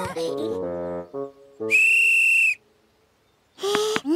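A referee's whistle blown once in a single long, steady blast about halfway through, preceded by a short run of cartoon music notes stepping downward.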